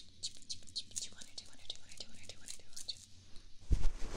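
Soft strokes of a fluffy brush across the microphone, quick and even at about five a second. A sudden loud rustling rush follows near the end.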